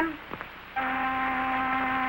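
A boat's whistle sounding one long steady note, starting just under a second in.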